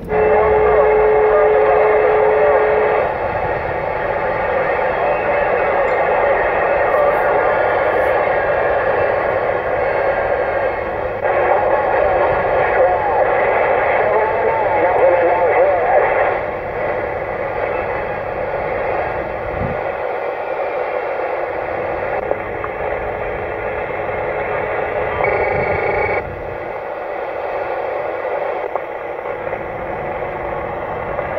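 Uniden Grant XL CB radio on receive over a skip band: a steady wash of static and band noise with faint, garbled distant voices. A steady tone sounds over it for the first three seconds.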